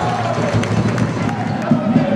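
Sports-hall ambience during a basketball game: a babble of player and spectator voices over the players' running footsteps on the court floor.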